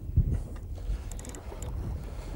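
Low wind rumble on the microphone and sea noise alongside a boat, with faint splashing about a second in as a hooked tope thrashes at the surface.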